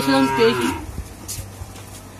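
A cow mooing once, a long steady call that ends less than a second in.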